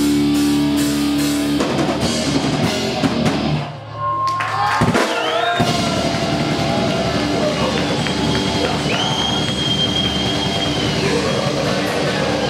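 Death metal band playing live: distorted electric guitars and drum kit, with a held chord early on and a brief drop in level about four seconds in. In the second half a high thin whistle is held for about two seconds over the band.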